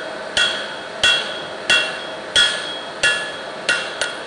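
Ball-peen hammer striking a red-hot steel bar on a cast steel anvil, tapering the end of a chisel. Six evenly spaced blows, about one every two-thirds of a second, each with a short metallic ring.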